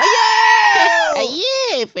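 A high-pitched voice wailing one long drawn-out cry that sags slightly in pitch, then swoops down and back up near the end.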